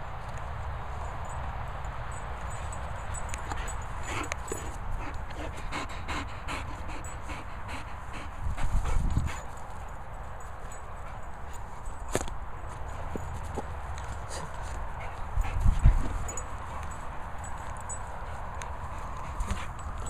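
A boxer dog running and playing on grass, with its footfalls and a few short dog sounds. A steady low rumble on the microphone swells loudly twice, about nine seconds in and again near sixteen seconds.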